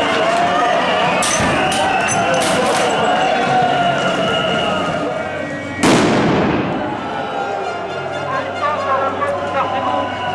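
A single loud bang about six seconds in as a tear-gas grenade goes off in the street, its echo fading quickly. It comes over the steady voices and chanting of a crowd of protesters.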